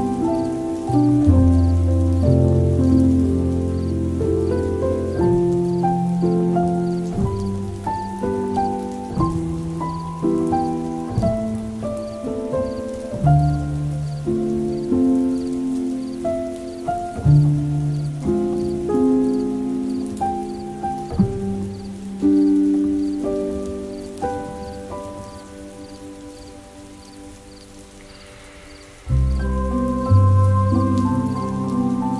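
Slow, calm solo piano music, single notes and low chords ringing out and dying away, over a faint steady rain-like patter. The playing fades down over the last few seconds, then a loud low chord starts a new phrase just before the end.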